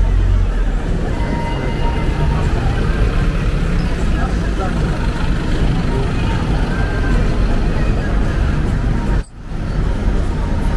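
Street traffic, with cars and a black taxi passing close by, over a steady low rumble. The sound drops out briefly about nine seconds in, then returns.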